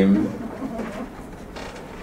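The last syllable of a man's Arabic recitation, then a quiet pause with a faint creak.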